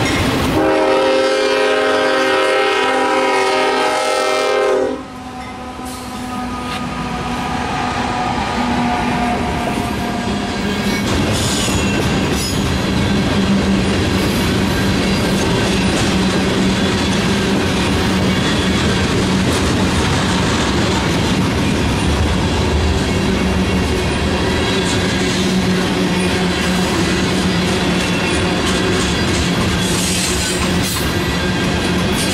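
A freight locomotive's horn sounds one long blast of about four seconds, then stops sharply. A loaded tank-car freight train then rolls past close by with a steady rumble and clickety-clack of the wheels over the rail joints, while a second freight train runs on the other track.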